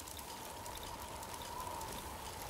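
Sound-design effect for an animated glowing light-bulb logo: a steady crackling fizz with a thin, slightly wavering hum running through it and a low rumble underneath.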